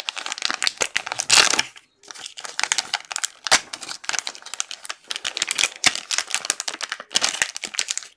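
Plastic wrapping crinkling and tearing as a trading-card pack is opened by hand, in irregular crackling handfuls with a couple of short pauses.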